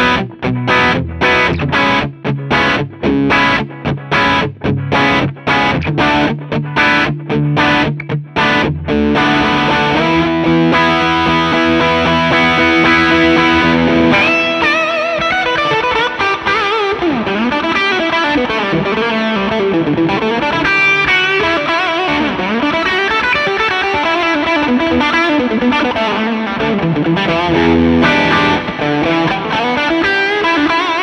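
Electric guitar, a Gibson Les Paul Standard '59 reissue, played through a JAM Pedals TubeDreamer 808-style overdrive into a Fender '65 Twin Reverb amp. Short choppy chord stabs for the first nine seconds or so, then ringing held chords, then from about halfway a lead line with string bends and vibrato.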